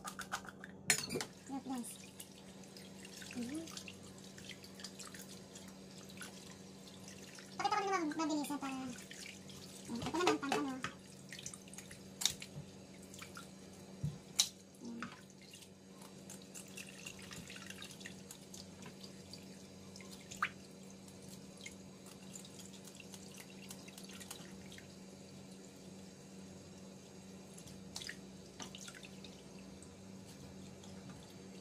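A thin stream of tap water runs into a stainless steel kitchen sink, with scattered sharp clicks and knocks as whole fish are handled and cut with scissors in the sink. A voice is heard briefly a few times, loudest around 8 and 10 seconds in.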